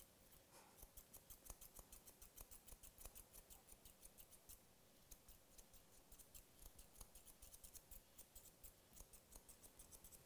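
Grooming chunker shears snipping through a Wheaten Terrier's coat on top of the head: a faint, rapid run of short metallic snips, about three or four a second, with a brief pause around the middle.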